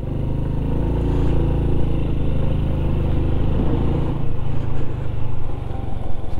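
Honda Biz 100's small single-cylinder four-stroke engine running as the bike is ridden along a street, getting louder over the first second and then holding a steady hum.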